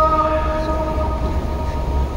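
The last held note of the Fajr azan, a single sung tone from the mosque loudspeakers, dies away just after the start. A steady low rumble and the general noise of a crowd walking on open marble paving follow.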